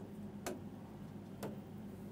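Faint ticking, one tick about every second, over a low steady hum.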